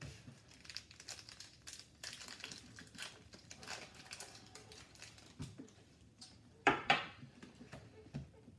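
A hockey card pack's foil wrapper crinkling as it is torn open and handled, a run of short rustles, with one louder, sharper rip or rustle about seven seconds in.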